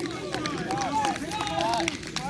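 Rugby players' voices calling and shouting across the pitch: many short, overlapping calls, too distant to make out as words.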